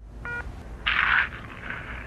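Short electronic voicemail beep, a single steady tone, followed about a second in by a brief burst of rustling noise as the recorded phone message begins.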